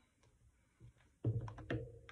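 Hands handling paper on a cutting mat: faint ticks at first, then louder rustling and several sharp taps and clicks in the second half.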